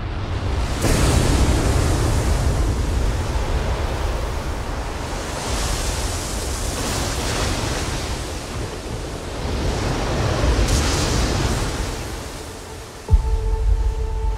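Ocean waves surging and crashing in three big swells over a deep rumbling undertone. Near the end a sudden deep boom hits, and held musical tones begin.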